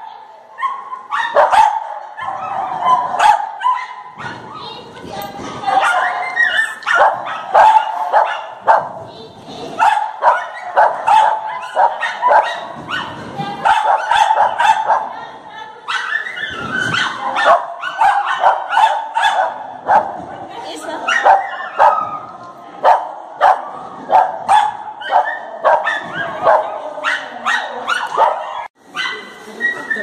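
A large dog barking loudly and over and over, in quick runs of barks that go on almost without a break, close by in a reverberant hall.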